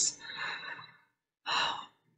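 A person sighing out, a brief voiced sound trailing into a breathy exhale, then a short breath drawn in about a second and a half in.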